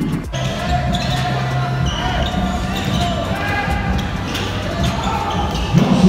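Basketball game sound: a ball bouncing on a hardwood court and short sneaker squeaks, under a background music track with steady held tones.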